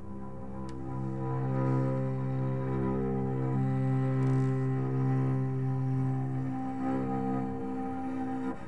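Slow ambient music of long, layered bowed-cello notes held over a low drone, swelling in over the first couple of seconds and then sustained.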